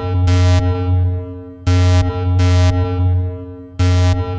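Synthesized electronic intro sting: a ringing, sonar-like tone over a deep bass, struck by a pair of short hissing hits that recur about every two seconds, three times in all.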